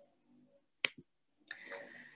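A pause between speech, mostly silent, broken by one short sharp click a little under a second in, a smaller tick just after it, and a faint rustle of noise near the end.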